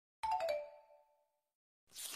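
A short, bright chime sound effect rings once and fades away over about a second. Near the end there is a brief papery rustle as a photo album page is turned.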